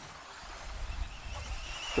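Faint trackside sound: a low rumble, with the thin, slightly rising high whine of electric RC buggy motors in the second half.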